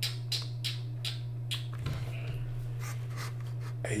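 Computer mouse clicking: a string of irregular sharp clicks, most of them in the first two seconds, over a steady low electrical hum.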